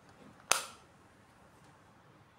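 One sharp click, about half a second in, from the hard clear plastic amulet case being handled, with a brief fading tail.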